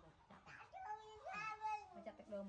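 A baby monkey giving two high, meow-like calls, each rising and then falling in pitch, about a second in.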